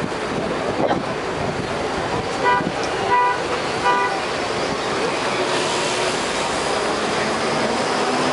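A vehicle horn sounds three short toots in quick succession, a little less than a second apart, near the middle, over steady roadside traffic noise.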